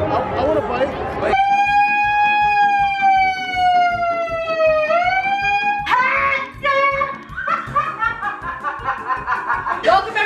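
A handheld megaphone sounds one long held tone for about three and a half seconds. The tone sinks slowly in pitch, then swoops up and breaks into loud voices through the megaphone.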